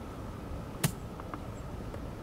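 A single sharp click of a 60-degree golf wedge striking, about a second in, followed by two faint ticks.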